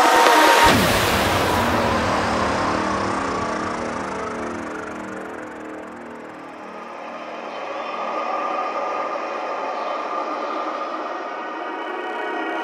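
Closing bars of a psytrance remix: the kick drum and bassline stop about half a second in under a falling synth sweep, leaving a fading wash of noise. Sustained synth pad chords then swell up in the second half.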